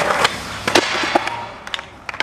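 Skateboard landing a switch frontside 360 down a sixteen-stair set, with a loud crack right at the start, then the wheels rolling away on concrete with a few sharp knocks. The rolling fades within about a second and a half.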